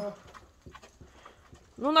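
Dogs eating from metal bowls: a few faint, scattered taps and clinks of muzzles and teeth against the bowls.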